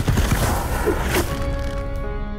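Cinematic sound design: heavy low thumps and rumbling noise for about a second, ending in a sweeping whoosh, then a held music chord of several steady tones.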